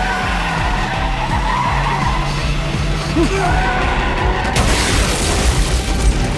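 A film car-chase sound mix: a car engine running hard and tyres skidding, with a music score underneath. A rush of noise swells in about four and a half seconds in.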